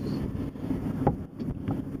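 Wind buffeting the camera's microphone in low, uneven gusts, with a couple of faint knocks about a second in.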